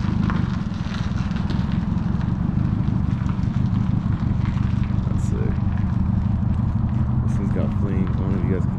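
An engine idling steadily, with people's voices in the background.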